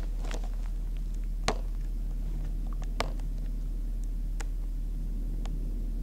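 A steady low hum with a few scattered sharp clicks, the loudest about a second and a half in and another at three seconds.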